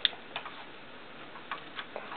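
Hard plastic parts of a Transformers Deluxe Class Bumblebee toy clicking as its leg and wheel pieces are moved into place during transformation: a handful of separate sharp clicks, the loudest at the very start.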